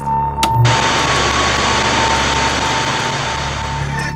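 TV-style static hiss cutting in sharply about half a second in and running for about three seconds. It sits over a steady electronic tone and low hum, and a short low thump comes just before the hiss starts.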